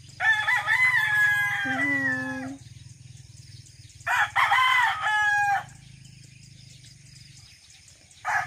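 Roosters crowing twice: a long crow that ends on a lower held note about two and a half seconds in, then a shorter crow about four seconds in.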